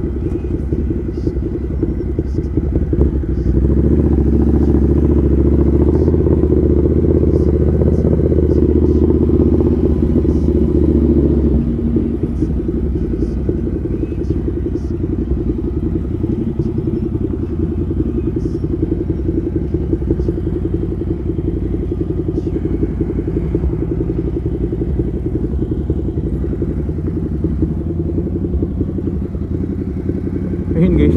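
Ducati Scrambler's L-twin engine running under way, with a stretch of harder, louder running early on that then eases into lower, steady running at low speed.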